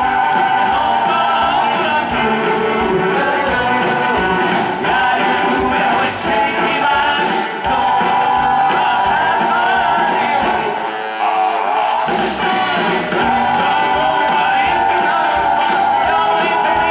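Live rock and roll band music with a steady beat and a male lead vocal singing into a microphone.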